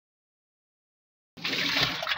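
No sound at all for about the first second and a half, then water poured from a plastic bucket into the spin-dryer tub of a twin-tub washing machine, rinsing out the spinner.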